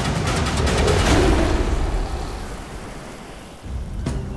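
A rushing, surf-like noise in an intro sequence that swells about a second in and then fades away. The louder soundtrack comes back in just before the end.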